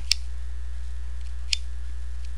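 Two short, sharp clicks about a second and a half apart, over a steady low hum.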